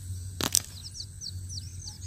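High, short falling chirps of small birds, repeating several times a second, with two sharp clicks about half a second in.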